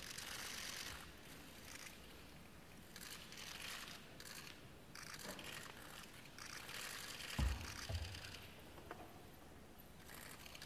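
Faint rustling and shuffling of a hushed crowd under a stone portico, with a few scattered clicks. Two low thumps come about seven and a half and eight seconds in.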